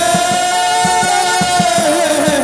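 Hát văn ritual music: one long, wavering melodic note held over quick, steady drum beats, about four to five a second.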